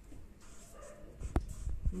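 Felt-tip marker writing on chart paper: quiet strokes with soft knocks and one sharp tap about two-thirds of the way in.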